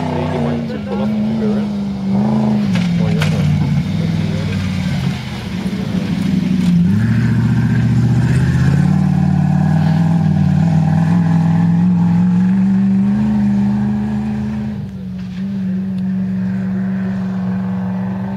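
Off-road race truck's engine running hard on a dirt course, its pitch rising and falling with throttle and gear changes, with a sharp climb in revs about seven seconds in.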